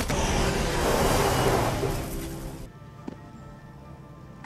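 Film action soundtrack: a loud rush of noise with a low rumble, an open vehicle speeding through desert sand and dust, swelling about a second in and cutting off abruptly about two-thirds of the way through. Sustained orchestral music carries on underneath and is left alone at the end.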